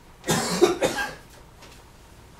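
A person coughing: a quick run of several coughs starting about a quarter second in and over within a second.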